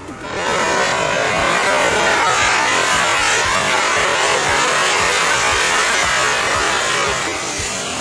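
A firecracker burning and spraying sparks, with a loud steady hissing rush and crackle that starts suddenly and eases slightly near the end.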